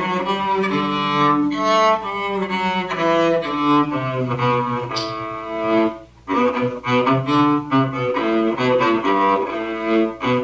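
Cellos playing a round together, bowed notes moving stepwise in overlapping parts. The playing breaks off briefly about six seconds in, then resumes.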